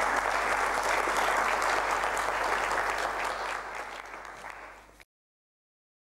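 Audience applauding, a dense steady patter of many hands clapping that dies away about four seconds in and cuts off suddenly about five seconds in.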